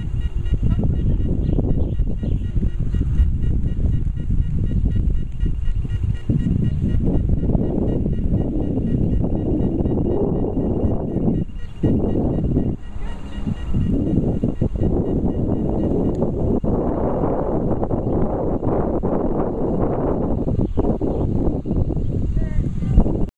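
Steady, rapidly repeating high electronic beeping from beep baseball gear for blind players, over loud, gusty wind noise on the microphone. The wind drops away briefly twice near the middle.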